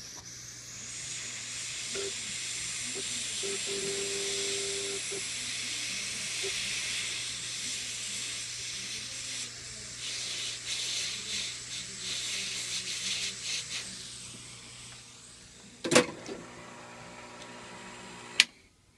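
Foot-pedal-operated heat gun blowing hot air onto heat-shrink tubing: a steady hiss with a low hum that fades out about four seconds before the end. A sharp click follows about two seconds before the end.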